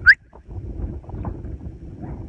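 Wind buffeting the microphone as a steady low rumble, opened by one short rising chirp right at the start.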